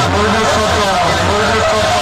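Large bank of PA horn loudspeakers playing a DJ dialogue-mix track at high volume. The track holds a repeating rising-and-falling swoop, about two a second, over a dense noisy bed.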